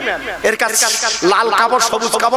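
A man preaching loudly into a microphone, with a long hissing sound partway through his speech about a second in.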